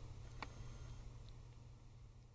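Near silence: quiet room tone with a steady low hum, and one faint click about half a second in.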